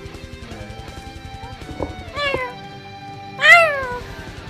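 Background music with a steady beat, with two cat meows over it: a short one about two seconds in, and a louder one near the end that rises and then falls in pitch.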